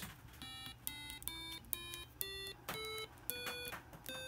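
Seven short, buzzy square-wave beeps from an Arduino's tone() output through a small Snap Circuits speaker, stepping up the scale one note at a time from C to B as the breadboard push-buttons are pressed in turn, with a faint click at the start of each note. The top C begins right at the end.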